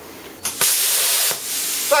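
A steady rushing hiss of air that starts abruptly about half a second in, dips briefly, and carries on until speech resumes.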